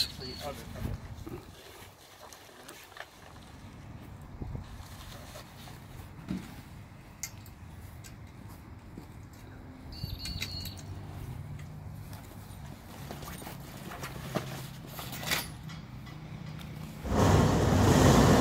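Faint outdoor background with scattered light knocks and rustles from canvas and aluminium tent poles being handled. A much louder rushing noise comes in about a second before the end.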